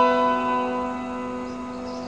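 Background music: a chord on a plucked or struck string instrument ringing on and slowly fading, with no new notes until just after the end.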